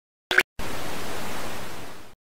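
A short click-like blip, then a steady television static hiss that eases off slightly near the end before cutting out. This is the sound effect of an old TV being switched off with a remote.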